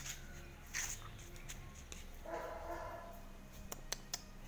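Belgian Malinois puppy giving one soft, short whine a little over two seconds in while being held, with a few faint clicks near the end.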